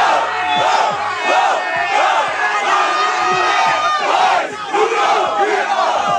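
A crowd of spectators shouting and cheering together, loud and sustained, in reaction to a freestyle rapper's punchline.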